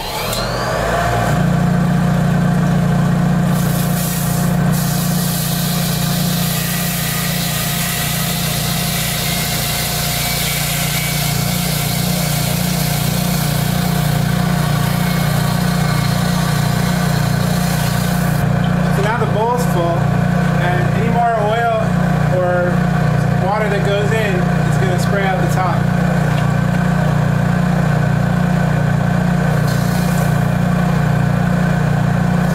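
Benchtop oil centrifuge's electric motor starting up, its pitch rising as the bowl spins up toward 3450 RPM, then running with a steady hum and a hiss of air from the open bowl. After about eighteen seconds the sound changes as oil is poured into the spinning bowl, with some wavering, warbling tones for several seconds.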